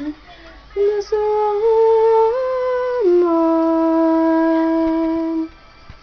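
A woman's voice singing wordless held notes with no accompaniment. After a short pause the notes step upward three times, then drop about three seconds in to a long low note that stops shortly before the end.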